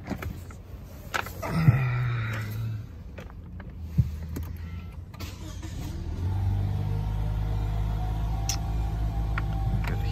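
Inside the cabin of a 2020 Lexus IS 300 F-Sport: a brief motor whir and a sharp click, then from about six seconds in the engine starts and settles into a steady idle.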